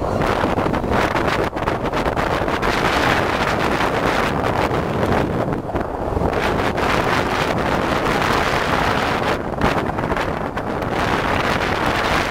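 Steady wind noise on the microphone, with the continuous running of a small boat's engine underneath.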